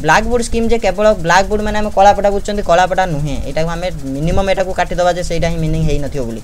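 A man's voice talking steadily at a low, even pitch: speech only.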